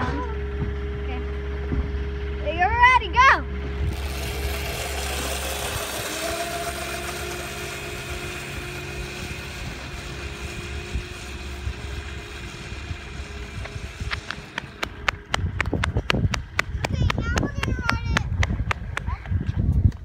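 Wind rushing over a phone microphone outdoors, with a short burst of a child's voice about three seconds in. Over the last few seconds comes a rapid run of sharp clicks and knocks.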